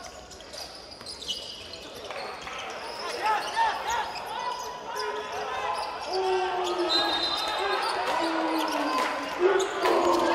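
Live college basketball in a gym: a basketball bouncing on the hardwood court, sneakers squeaking and players' and bench voices shouting. It is quieter for the first couple of seconds around a free throw, then busier once play resumes.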